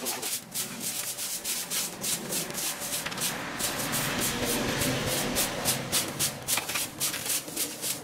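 Hand brooms sweeping dry cut grass and litter across bare earth in quick scratchy strokes, several a second, with a rake scraping through the debris.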